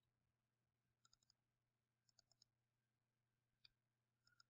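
Near silence, with a few very faint computer mouse clicks: one about a second in, two a little after two seconds, and one near the end.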